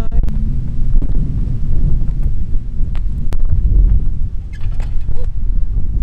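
Wind buffeting the camera microphone, an uneven low rumble with a few small clicks.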